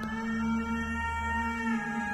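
Dramatic background score: long held tones at several pitches over a steady low drone, with some of the notes shifting slightly near the end.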